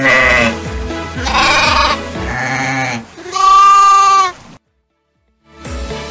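Domestic sheep bleating: four wavering bleats in a row, the last one held steady and the loudest. A short silence follows.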